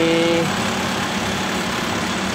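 Diesel engine of a Mitsubishi medium bus running steadily at low speed as the bus pulls slowly forward. A short pitched tone rises and holds for about half a second at the start.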